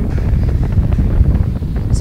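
Distant Falcon 9 rocket's nine first-stage engines, a steady low rumble with crackling through it.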